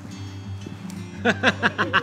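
Background music throughout; a little over a second in, a person laughs, a quick run of short 'ha' sounds.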